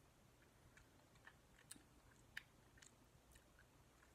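Faint, sparse wet mouth clicks and smacks from someone sucking on a sour cherry lollipop, the loudest about two and a half seconds in.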